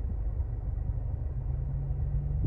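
Car engine idling, a low steady rumble heard from inside the cabin.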